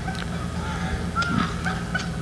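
Playback of a kids' basketball game through the hall's speakers: several brief high squeaks of sneakers on a gym floor over a steady low hum.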